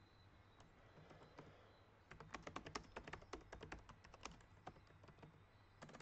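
Faint typing on a computer keyboard: a quick, irregular run of key clicks starting about two seconds in.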